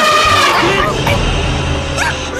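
A motorboat engine starts running with a steady low rumble about half a second in, under dramatic film music, with a brief cry at the start.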